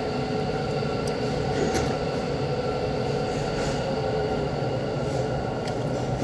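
Steady mechanical hum of restaurant equipment, such as ventilation or kitchen machines, with several constant tones over a low rumble and a few faint clicks.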